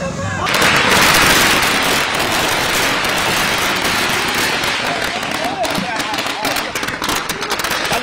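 Firecrackers bursting in a rapid, continuous crackle that starts about half a second in. In the second half it thins into many separate sharp cracks, with voices shouting over it.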